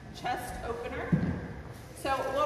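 Indistinct voices of people talking, with a short, louder low sound about a second in.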